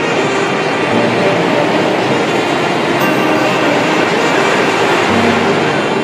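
Surf on a sandy beach: waves breaking and foam washing up the shore in a steady, loud rush, with background music faint underneath.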